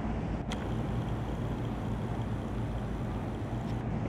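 Room tone: a steady low hum and hiss, with one faint click about half a second in.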